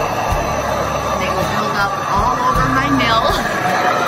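Fiber mill carding machine running steadily: a continuous mechanical hum and whir from its belt-driven drums.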